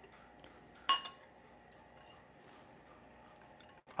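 A wire whisk clinks once, sharply, against a glass mixing bowl about a second in while frosting is being whisked; the rest is faint.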